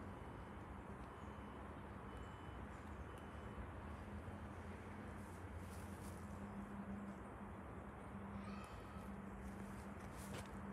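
Faint outdoor background with a steady low hum. A short high beep repeats at even intervals, about one and a half a second, during the first few seconds.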